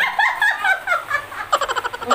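A woman laughing hard in high-pitched bursts, breaking into rapid repeated ha-ha pulses near the end.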